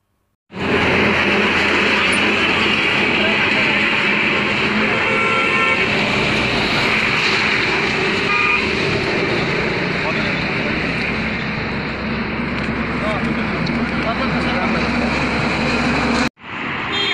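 Roadside street ambience: steady traffic noise mixed with the voices of a crowd, with brief vehicle horn toots about five and eight seconds in.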